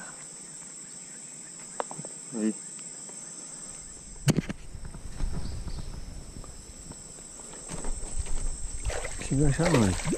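Insects buzzing steadily in the background, with a sharp click about four seconds in followed by a few seconds of rustling and knocks; a man's voice calls out briefly early on and again near the end.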